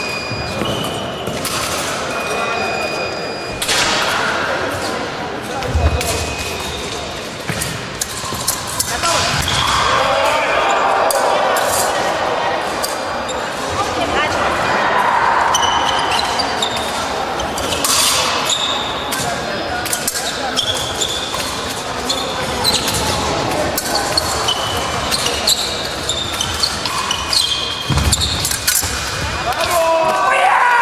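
Épée fencers' feet stamping and lunging on a piste over a wooden floor, with repeated thuds and knocks and occasional short high blade rings, over background voices echoing in a large hall. Two heavier thuds come about six seconds in and near the end.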